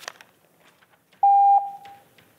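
Electronic beep from the public comment speaking timer: one steady mid-pitched tone about half a second long that then fades out. It sounds a little over a second in, as the speaker's countdown reaches zero, signalling that his time is up.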